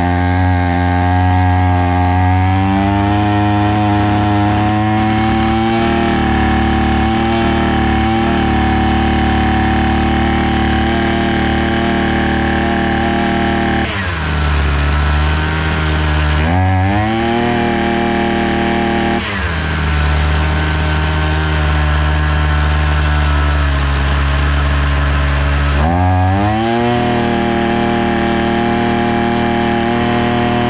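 Datsu TR 555 brush cutter's small two-stroke engine running on the bench. Its speed steps up a little after about two seconds, then twice drops to a low idle and climbs back, the second time staying low for about seven seconds.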